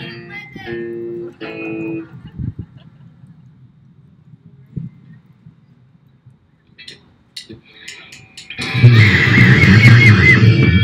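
A live rock band of electric guitars, bass guitar and drum kit: a few held guitar notes in the first two seconds, a quieter stretch with a few sharp clicks, then about 8.5 seconds in the whole band comes in together, loud, with a wavering lead line over the drums and bass.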